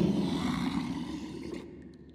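Cartoon sound effect of a deep monster-like roar, its low rumbling tail fading away over about a second and a half.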